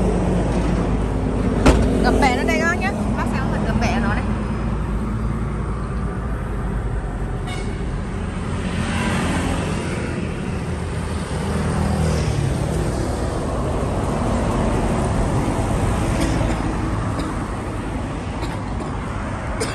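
Steady road traffic noise with a low rumble. A brief warbling sound comes about two to three seconds in.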